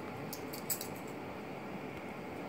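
Two dogs play-wrestling, with a few quick jingles of a metal collar tag about half a second in.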